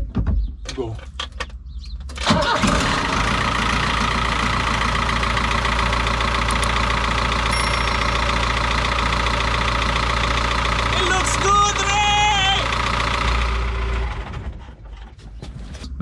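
Iveco Daily van's diesel engine starting about two seconds in, catching at once and then idling steadily, fading out near the end. It is running smoothly after its cooling system was repaired.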